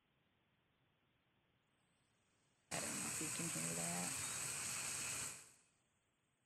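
Steady sizzling hiss of a 345-kilovolt power transmission line, the crackle of corona discharge, played back loud from a phone's speaker into a microphone. It starts suddenly about three seconds in and fades out about two and a half seconds later; it sounds like a frying pan.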